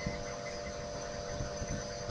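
Steady electrical hum with a faint background hiss, the noise floor of the narration recording.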